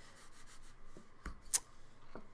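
Hands rubbing over and opening the faux-leather cover of a Filofax refillable notebook: a soft rubbing with two light taps a little past halfway, the second the louder.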